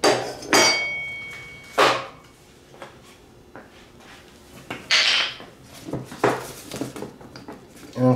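Loose steel mower-deck parts clanking and knocking as they are handled on the steel deck: a sharp clank early on rings on briefly, then another knock, a short scrape around the middle and a few scattered small knocks.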